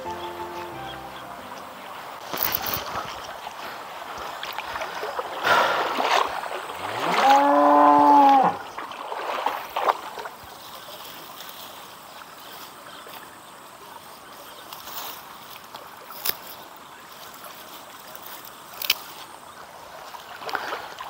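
A cow moos once about seven seconds in, a single call of nearly two seconds that rises in pitch and then holds. Beneath it runs the steady rush of a small stream, with a few scattered knocks and rustles.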